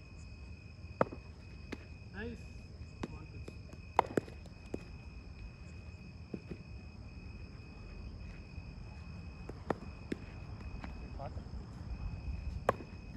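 Sharp knocks of a cricket ball off a bat and into fielders' hands during slip-catch practice, loudest about a second in and at four seconds, with fainter ones scattered through. Under them runs a steady high-pitched trill of night insects.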